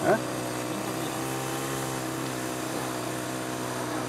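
The 15 cc four-stroke engine of a 1:8 scale BAT model tank running steadily under the load of towing a second model tank.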